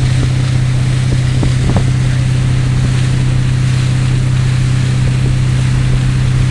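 Towing motorboat's engine running at steady speed, a constant low drone, with rushing water and wind noise on the microphone.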